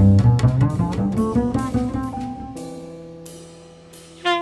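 Acoustic jazz: a double bass plucked in a fast run of notes, then one long note fading away in the second half.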